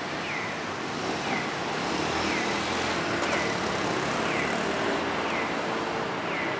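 Road traffic noise that swells as a vehicle passes, with a short falling chirp repeating about once a second.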